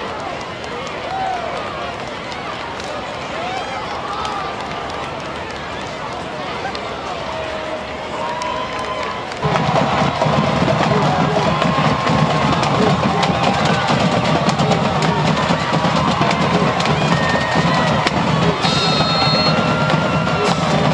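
Crowd chatter at a football game. About halfway through, drums and band music start suddenly and louder, with a steady bass-drum beat over the crowd noise.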